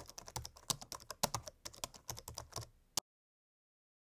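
Computer keyboard typing sound effect laid under on-screen text being typed out: a quick, irregular run of key clicks that stops abruptly about three seconds in.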